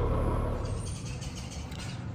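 Low, steady hum of a Honda Gold Wing's flat-six engine idling at a standstill, fading out over the first second and leaving only faint background noise.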